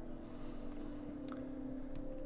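Quiet room tone: a steady low hum, with a couple of faint clicks.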